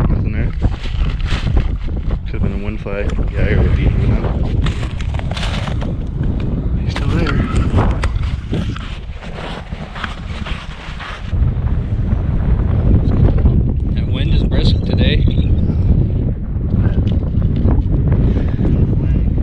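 Strong wind buffeting the microphone, a heavy low rumble that grows louder about eleven seconds in, with indistinct voices through it.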